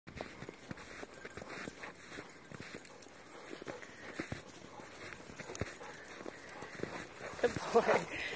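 Footsteps crunching in snow, a quick irregular run of soft crunches and clicks while walking. Near the end a voice starts up.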